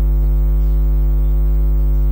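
Loud, steady electrical mains hum with a ladder of buzzing overtones, unchanging throughout.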